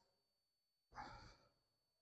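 Near silence, broken about a second in by one short breathy exhale, a sigh lasting under half a second.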